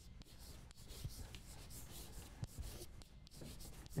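Chalk writing on a blackboard: a faint run of short scratching strokes with light taps as words are written by hand.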